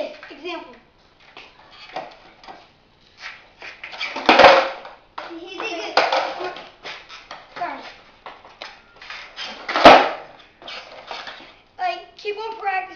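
Skateboard clattering on a concrete floor as tricks are tried, with two sharp slaps of the board landing, about four seconds in and near ten seconds. Lighter knocks of the deck and wheels come between.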